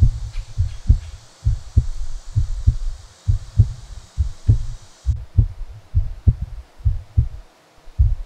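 Recorded heartbeat sound effect: slow, steady double thumps (lub-dub), a little under one beat a second.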